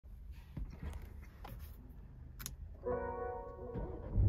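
Maserati Grecale's power-on chime: a chord of steady held tones sounds from about three quarters of the way in, as the car's digital cluster and screens wake up. Before it come a few faint clicks.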